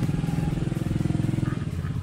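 An engine running steadily: a low, even hum with rapid regular pulsing.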